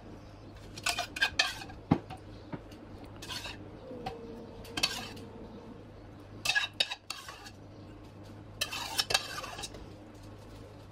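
A metal serving spoon clinking and scraping against a metal pot and baking pan as cream sauce is scooped up and spooned over sliced potatoes. The sound comes in short clusters of clinks every second or two, loudest near the start and near the end.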